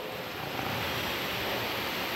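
Steady, even background hiss picked up by the lectern microphone in a large church.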